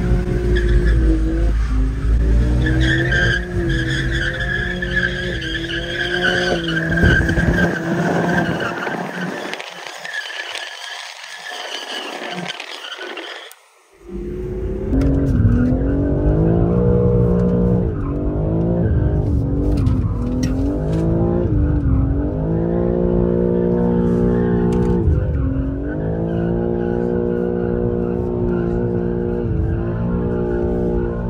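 BMW G80 M3's twin-turbo inline-six at high revs with the rear tires squealing as it drifts, heard from a following car; the sound fades away short of halfway. From about fourteen seconds in, the engine is heard from inside the cabin, revving up and dropping back again and again through the gear changes.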